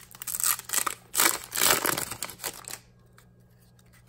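Foil wrapper of a Pokémon trading-card booster pack being torn open and crinkled by hand. The loudest tearing comes a little after a second in, and the crackle stops at about three seconds.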